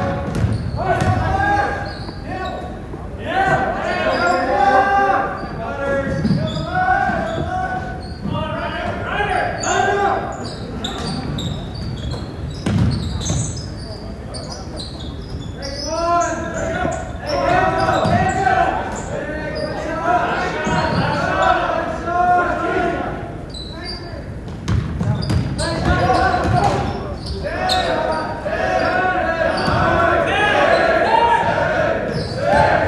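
A basketball dribbled on a hardwood gym floor, with indistinct voices calling out on and around the court, echoing in the large hall.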